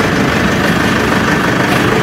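An engine running steadily at idle, a continuous low rumble.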